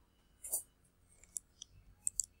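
A few faint, scattered clicks of a computer mouse, with a brief soft noise about half a second in.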